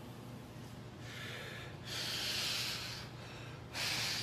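A man breathing hard through his mouth while flexing, in forceful hissing breaths: a softer one about a second in, a longer, louder one just after, and another sharp one near the end.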